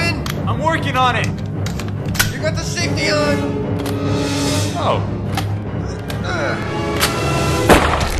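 Action-film fight soundtrack: music under the yells and grunts of a struggle, with a few sharp hits and one loud gunshot near the end.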